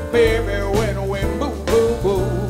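Small jazz band playing: a male singer over piano, electric bass and drum kit, with drum hits near the start and near the end.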